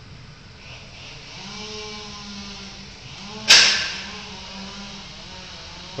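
A low, steady hum that starts a little over a second in, with a single sharp knock a little past halfway through.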